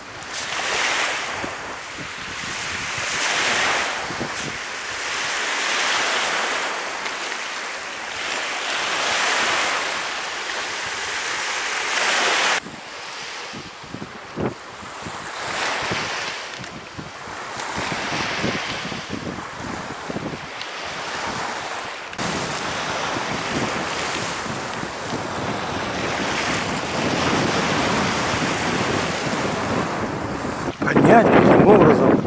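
Small waves washing onto a pebble shore, swelling and falling back every couple of seconds, with wind buffeting the microphone.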